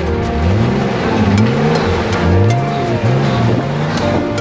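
Off-road 4x4's engine revving again and again, each rev rising and falling in pitch, as it works through mud, under background music.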